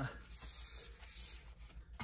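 Faint handling noise: a hand brushing onto a plastic shop light fixture lying on a plastic tablecloth, over a steady low hum.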